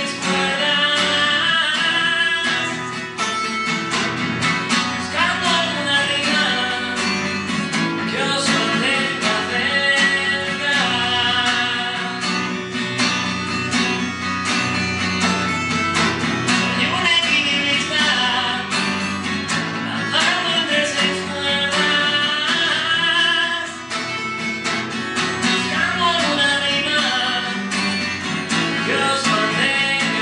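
Acoustic guitar strummed steadily with a man singing over it, live and unamplified-sounding at a microphone.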